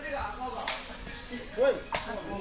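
Sharp cracks of a sepak takraw ball being kicked, three in about two seconds, with short shouts from spectators between the kicks.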